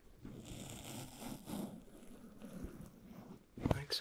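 Close-up scraping of a straight razor through shaving cream on a microphone's foam cover, with a sharp knock near the end.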